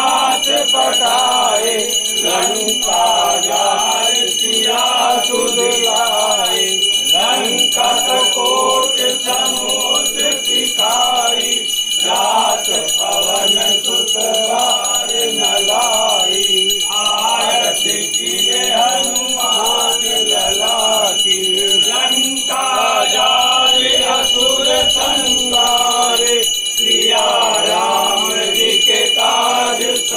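A group of men singing a Hindu aarti hymn together in unison, with a small brass hand bell rung without pause throughout, its bright ringing steady under the voices.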